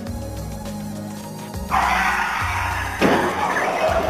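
Background music, and from about a second and a half in, a sudden loud rush of dry fallen leaves crunching and rustling as two people fall into a deep pile of them, with a second burst about three seconds in.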